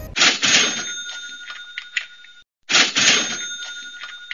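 A cash-register 'ka-ching' sound effect played twice, about two and a half seconds apart: each a clattering rattle with a bell tone ringing on under it, cutting off suddenly.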